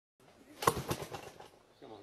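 Small engine of a homebuilt single-seat helicopter being pull-started: a quick run of sharp bursts about half a second in that dies away within a second without the engine catching.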